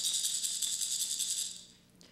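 A hand rattle shaken quickly for about a second and a half, then fading out. It is the cue to turn the page in a read-along storybook recording.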